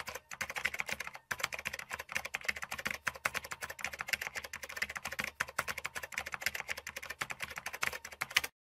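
Rapid computer-keyboard typing sound effect, a dense run of key clicks with a brief break a little over a second in, matching text being typed onto the screen.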